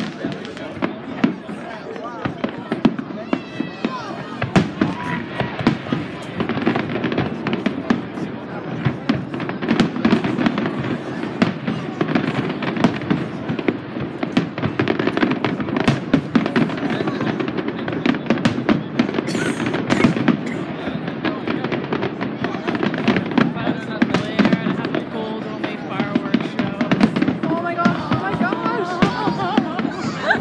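Aerial fireworks display: a dense, continuous run of shell bursts, bangs and crackling, many overlapping in quick succession.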